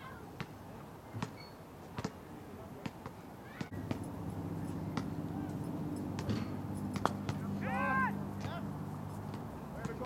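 A cricket bat strikes the ball once with a single sharp crack about seven seconds in, and a player's short, high-pitched shout follows. Under it, from about four seconds in, a steady low hum runs on, with scattered light clicks before it.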